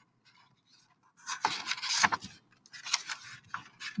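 A page of a picture book being turned by hand: after about a second of quiet, a couple of seconds of paper rustling and scraping.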